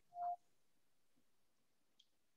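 Near silence on a video-call line, broken only by one brief faint tone just at the start.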